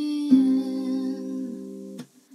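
Acoustic guitar chord strummed about a third of a second in and left to ring, fading away towards the end, under a soft hummed vocal note.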